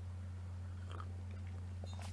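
A person sipping and swallowing coffee from a mug, with a couple of faint soft mouth sounds about a second in and near the end, over a steady low hum.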